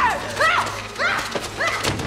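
A rapid series of short, high-pitched vocal cries, about five in a second and a half, each rising and then falling in pitch: strained yells of someone in a violent hand-to-hand struggle.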